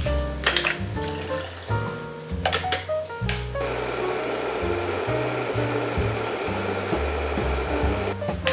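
Electric kettle heating water: a steady rushing hiss that starts about three and a half seconds in, over background music. Several sharp clicks come before it, in the first three seconds.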